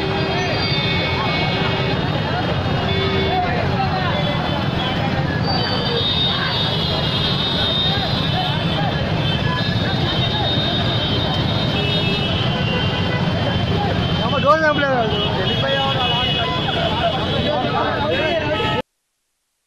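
Street noise from a slow motorbike rally through a crowd: many motorbike engines running under a steady mass of people shouting, with long, steady high tones held over it and one louder shout about fourteen seconds in.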